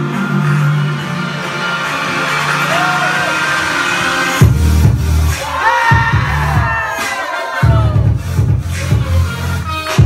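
Dance-routine music played loud: a sustained melodic passage cuts abruptly, about four seconds in, to a heavy bass-driven electronic beat, which drops out briefly and comes back.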